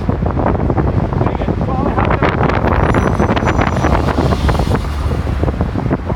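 Road traffic on a wide city avenue, an articulated city bus and cars driving past, with wind buffeting the microphone; the sound swells to its loudest in the middle.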